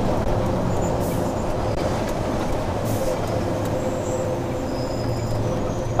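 Tipper lorry's diesel engine running steadily under way, heard inside the cab, with a couple of brief faint hisses about one and three seconds in.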